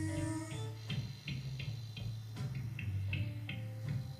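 Quiet instrumental stretch of a live rock band's slow blues groove. A bass guitar holds low notes under soft, evenly spaced drum-kit ticks, about three a second. A held sung note dies away in the first half second.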